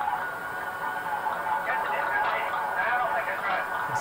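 Cockpit voice recorder playback: faint, thin-sounding voices of the flight crew, with a steady cockpit background noise under them, during the takeoff roll.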